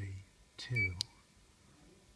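Mettler Toledo ID7 scale terminal's keypad giving one short, high electronic beep as a key is pressed, followed by a sharp click.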